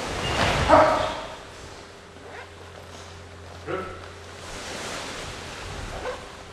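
A karate class moving through the kata Bassai Dai in unison. A loud group shout (kiai) comes with the swish of cotton gi about half a second in, and a shorter voice call follows a few seconds later.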